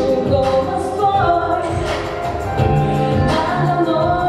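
A girl singing a pop song into a handheld microphone through the hall's sound system, over backing music with a steady beat.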